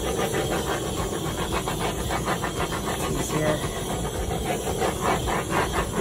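A handheld torch's flame hissing steadily with a fast, even flutter as it is passed over wet acrylic paint to heat it and bring up cells.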